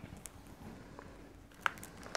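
A few faint clicks and taps from a smartphone being handled, with one sharper click near the end as it is set down.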